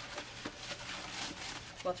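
A paper towel rubbing and rustling against the inside of a plastic bedpan as it is wiped dry, a dry, scratchy scrubbing sound.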